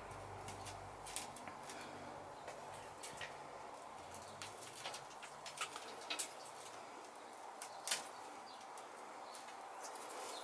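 Faint, scattered crackles and rustles of potting mix being pressed down by fingers around a tomato seedling in a small plastic pot.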